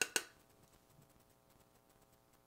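Two quick light taps of a makeup brush against a plastic blush palette right at the start, then faint steady room tone.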